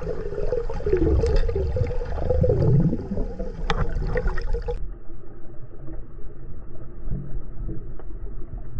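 Underwater water noise with a wavering tone and one sharp click in the first half. About five seconds in it switches abruptly to a duller, steady water rush.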